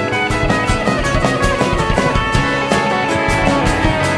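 Live rock band playing, with electric guitar over a steady drum beat.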